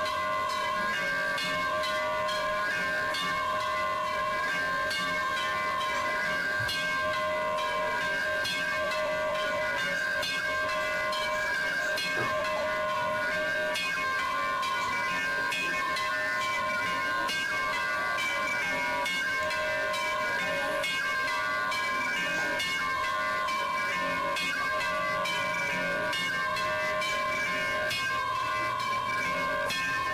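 Temple bells rung continuously with rapid, dense strikes, their tones merging into a steady ringing.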